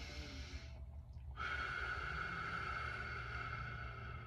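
A man breathing deeply, as in breath work: a breath ending about half a second in, then after a short pause a long, steady breath of about three seconds.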